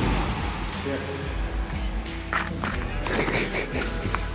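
Background music over a steady low hum, with two short puffs of breath blown through a soap-bubble wand, about two and three seconds in.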